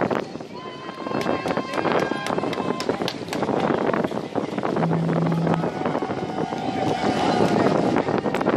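Wind on the microphone aboard a sailboat, with people's voices calling out across the water. A brief low steady tone sounds about five seconds in.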